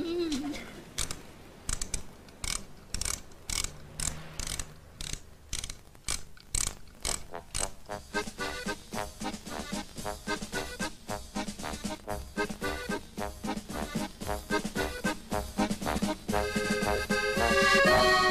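A wind-up music box: a run of evenly spaced ratcheting clicks for the first several seconds, then it plays a plinking tune from about eight seconds in. Louder accordion music comes in near the end.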